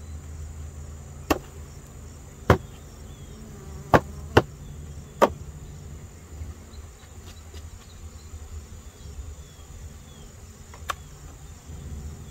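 Wooden hive frames knocking and clacking against the wooden hive box as they are lifted out: about six sharp knocks, five in the first five seconds and one near the end. Underneath runs a steady buzz of bees and insects.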